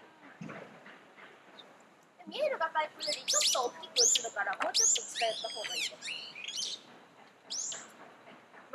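A songbird calling loudly, a quick series of high sweeping chirps starting about three seconds in, with people's voices in the background.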